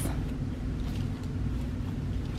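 Steady low rumble of background room noise with no distinct event.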